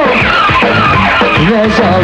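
Live rock band playing loudly: electric guitar, bass and drums, with notes sliding up and down in pitch between the sung lines.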